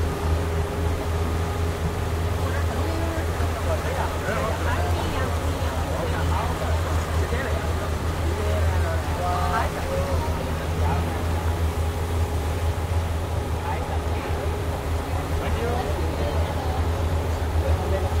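Speedboat engine running steadily at a low cruise, a constant deep drone with a steady hum above it. Indistinct voices of people talking are heard over the engine.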